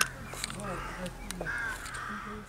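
Bird calls: a short arching cry repeated about three times over a steady low hum.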